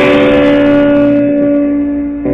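Electric guitar played loud through an amplifier, one note held and left ringing, fading slowly.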